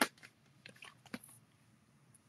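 Clear plastic stamp cases being handled on a tabletop: one sharp click, then a few faint scattered clicks and taps.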